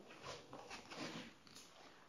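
Near silence: quiet indoor room tone with a few faint, soft rustles.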